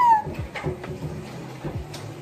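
A small dog's high whine: one arching call that rises, then falls away and ends just after the start. Soft background music follows.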